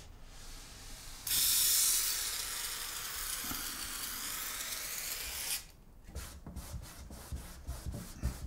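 Aerosol spray can hissing in one long burst of about four seconds that starts and stops abruptly. After it, a cloth rubs over wooden cabinet doors in quick back-and-forth wiping strokes.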